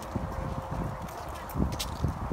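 Footsteps on an asphalt driveway: a few irregular dull thuds with some sharp clicks.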